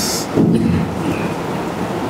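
A steady, loud hiss-and-rumble of background noise with no words. Near the start there is a short breathy sound, and about half a second in a brief low hum or murmur from the man as he tries to recall a name.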